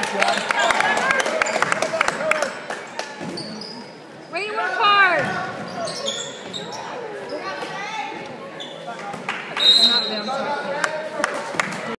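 A basketball being dribbled and bouncing on a hardwood gym floor, with players and spectators shouting, in a large echoing gym.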